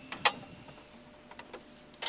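Pickup truck hood latch releasing with a sharp click about a quarter second in, then a few faint clicks as the hood is lifted open.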